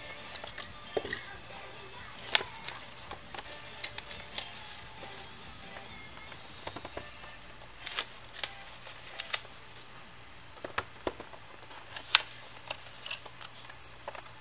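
A knife cutting the shrink-wrap on a sealed box of baseball cards, then the cardboard box and its contents being opened and handled. Scattered sharp clicks, taps and light rustling of cardboard and plastic.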